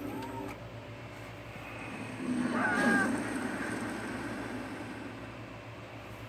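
Cartoon sound effects from a DVD menu played through a TV speaker: a rushing swell that peaks about two to three seconds in, with short squeaky, cry-like glides on top, then fades away over a steady low hum.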